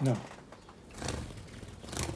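A person's voice says one short word, then about a second later comes a brief burst of noise.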